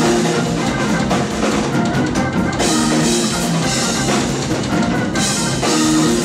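Live instrumental band playing: drum kit, extended-range eight-string electric bass and keyboards together.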